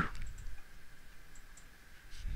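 A few faint computer mouse clicks over a quiet, steady background hiss.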